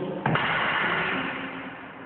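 A sharp knock about a quarter second in, then a rattling scrape that fades over about a second: practice swords striking in fencing drill.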